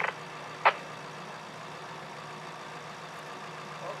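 Steady low hum of an idling vehicle engine, with one brief sharp click about two-thirds of a second in.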